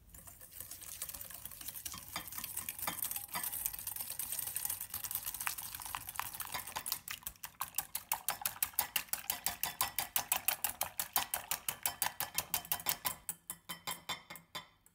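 Wire balloon whisk beaten by hand in a ceramic bowl, its wires scraping and clicking against the bowl as eggs and then egg whites are whisked. About halfway through the strokes settle into a fast, even rhythm of about five a second as the whites are whipped into a foam.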